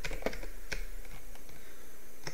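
Computer keyboard keystrokes: a few irregular, sharp key clicks as the backspace key is tapped to delete text.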